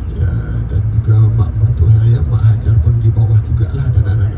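A man speaking into a microphone through a bus's public-address speakers, over the steady low rumble of the moving bus.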